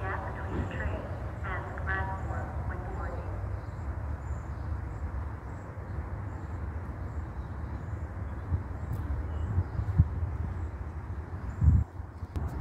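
Steady outdoor background rumble and hiss picked up by a phone microphone, with uneven low buffeting like wind on the mic. Faint voices talk in the first few seconds, and a few low thumps come near the end.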